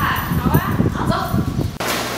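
A young woman's voice speaking or exclaiming with sweeping rises and falls in pitch, cut off abruptly near the end. A steady low hum takes its place.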